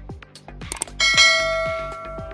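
A bright bell chime sound effect rings once about a second in and fades away over the next second, the notification ding that goes with a subscribe-button animation, over background music with a steady beat.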